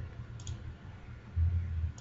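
Two faint computer-mouse clicks, one about half a second in and one at the end, with a low hum rising in the second half.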